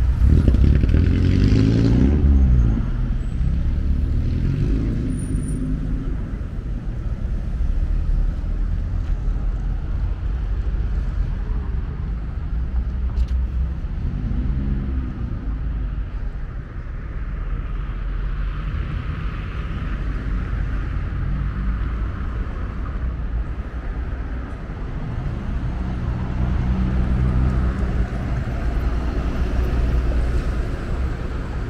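Road traffic: cars and other vehicles pass close by over a constant low rumble, one just after the start and another around the middle, each engine note rising and falling as it goes by.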